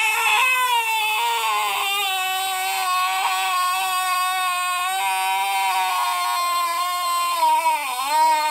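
A man's voice holding one long, high, loud wailing note, sinking slowly in pitch and dipping briefly near the end.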